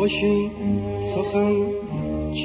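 Persian classical ensemble music in the Afshari mode: instruments play a melodic line over a steady low sustained tone.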